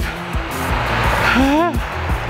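Background music under a rushing transition sound effect that swells about half a second in, with a short pitched cry that rises and then falls near the end.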